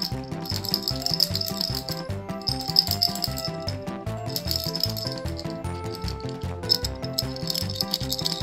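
Background music with a steady beat, over which a plastic cat toy ball with a rattle inside is shaken in four bursts of about a second each.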